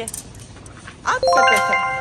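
A chime: several bright bell-like notes start in quick succession about a second in and ring on steadily.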